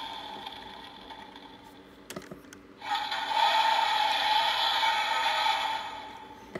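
Electronic sound effects from the Dragonstorm toy's built-in speaker, played while its eyes light up. A steady hissing effect fades out over the first two seconds. A few small clicks follow, then another effect starts about three seconds in and fades near the end.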